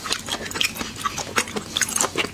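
Close-miked mouth chewing seafood: a quick run of wet smacks and small clicks from the lips and mouth.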